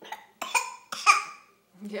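A baby coughing twice in quick succession, the second cough the louder, as crumbs of potato cake go down the wrong way.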